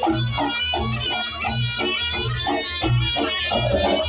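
Reog gamelan accompaniment playing: a slompret (reed shawm) melody over low drum and gong beats about twice a second.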